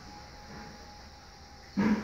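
A single short, loud dog bark near the end, over a quiet room background with a faint steady tone.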